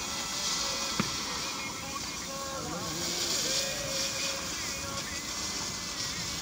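Oxy-fuel gas cutting torch hissing steadily as it cuts a hole through 14 mm mild steel plate, with a single sharp click about a second in.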